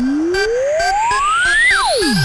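Tribal guaracha electronic dance music with a synthesizer sweep: a single pure tone climbs steadily in pitch, then plunges sharply near the end, over short repeating ticks.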